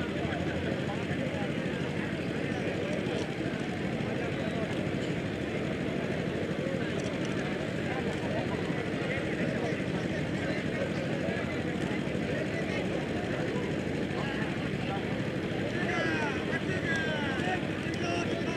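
Crowd of spectators talking in a steady, indistinct murmur with a low rumble underneath; a few higher-pitched calls stand out near the end.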